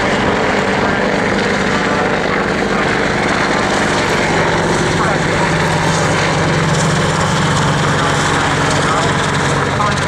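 Boeing AH-64 Apache twin-turbine attack helicopter flying low and slow, its rotors and engines giving a loud, steady drone; the low hum grows stronger in the second half as it comes closer.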